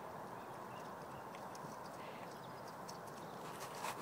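A dog moving about in muddy grass: faint scattered clicks and scuffs of paws and nosing over a steady outdoor hiss, with a slightly louder knock just before the end.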